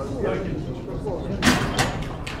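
A loaded steel barbell with Eleiko plates is set back into the bench press rack uprights, a loud metallic clank about one and a half seconds in with a smaller knock just after. Voices are heard around it.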